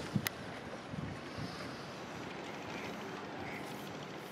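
Steady wind noise on the microphone, with a few low thumps and one sharp click in the first second and a half.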